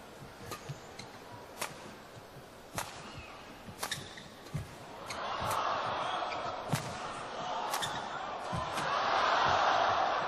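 Badminton rally: sharp racket strikes on the shuttlecock about once a second. From about halfway, crowd noise rises and swells toward the end as the rally builds.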